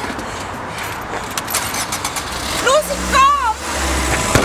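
Small van engine rumbling louder as the van pulls away, building from just under three seconds in. Overlapping it, a voice cries out in rising and falling high-pitched calls.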